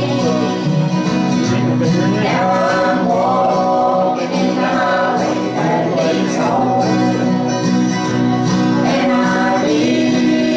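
Bluegrass gospel group playing banjo and acoustic guitars while several voices sing together.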